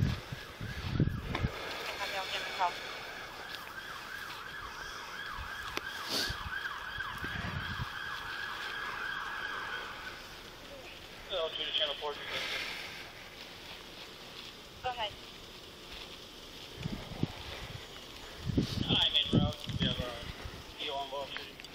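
Emergency vehicle siren sounding in a fast, evenly repeating up-and-down cycle for about eight seconds, then cutting off.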